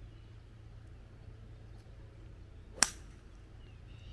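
Golf club striking a golf ball on a full swing: one sharp click almost three seconds in.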